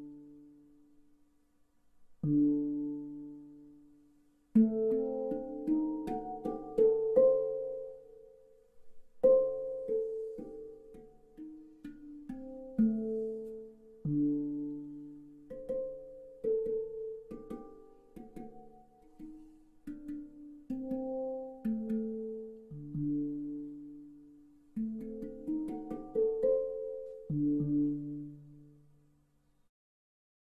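Handpan played by hand, heard through a Muling H1 magnetic contact pickup and an amplifier. Struck steel notes ring and fade: a low note sounds alone twice at the start, then a flowing melody of quicker notes follows, and the low note returns near the end.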